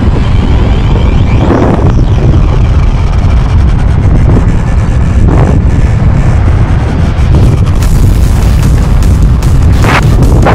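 Heavy wind buffeting on the microphone of a camera moving at speed with an electric unicycle: a loud, continuous, low rush of noise.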